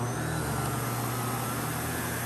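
Miele vacuum cleaner running steadily at full speed as its floor head is pushed onto a shag rug, a low motor hum under an even rush of air with a faint whine.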